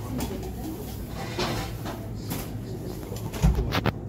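Commercial kitchen background noise: a steady low hum with scattered light clatter, and a few sharp knocks about three and a half seconds in.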